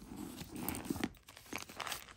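Rustling and crinkling as things are handled inside a handbag and a crinkly silver metallic pouch is lifted out, with a few light clicks.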